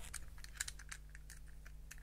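A scatter of small, faint clicks and taps from plastic LEGO pieces being handled and pressed together by hand.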